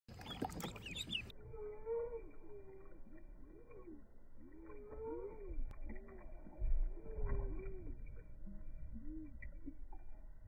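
Buff ducklings peeping, slowed down in slow motion so most of the peeps come out as low, drawn-out arching calls, several overlapping, that sound almost like cooing. For about the first second the peeps are high and at normal speed. A low rumble, the loudest moment, comes about seven seconds in.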